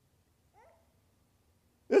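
A pause in a man's talk: near silence, broken by a brief faint rising sound about half a second in, then the man starts speaking again near the end.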